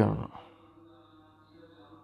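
A man's voice ends a drawn-out word at the very start, then faint room tone with a low steady hum.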